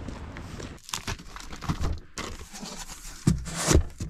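Cardboard box and plastic wrapping rustling and knocking in irregular bursts as the packaging is handled and opened.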